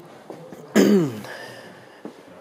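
A man's short cough about a second in, its voiced end falling in pitch.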